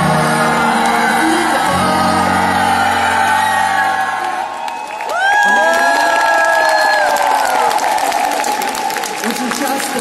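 Music with sustained low notes plays through a hall's sound system and breaks off about four and a half seconds in; the audience then answers with a long rising-and-falling whoop, cheering and clapping.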